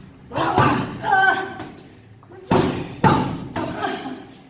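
Boxing-glove punches landing on a person's braced midsection with dull thuds, about five hits in two clusters, a pair near the start and three in the last second and a half. These are body shots for core conditioning, the abdomen tightened to absorb them.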